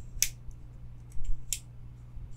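Zero Tolerance 0235 slipjoint pocket knife's blade snapping into its detents: two sharp clicks about a second and a quarter apart, one near the start and one past the middle.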